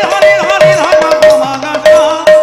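Instrumental music: a hand-played two-headed barrel drum beating a quick rhythm with bass strokes that bend in pitch, over a held steady tone.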